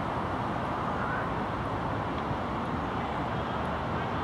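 Steady roar of road traffic from a nearby motorway, an even noise with no distinct events.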